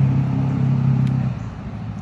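A motor vehicle's engine running with a steady low hum, fading out about a second and a half in.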